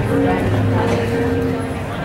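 Amplified live band music with long held notes, heard over people talking close by.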